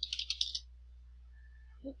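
Quick run of keystrokes on a computer keyboard for about half a second, then only a faint low hum.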